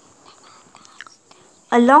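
Faint background hiss with a steady high-pitched whine and a few soft ticks. Near the end a woman's voice starts speaking.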